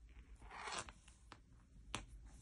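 Faint scraping swish of yarn being pulled over a Tunisian crochet hook as stitches are worked, lasting about half a second near the middle, followed by a couple of light clicks.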